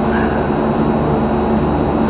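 A steady low mechanical hum with a rushing hiss over it, unchanging throughout, like a running motor.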